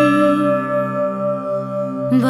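Devotional hymn music between sung lines. A held sung note fades out about half a second in, leaving a steady ringing tone over a continuous low drone.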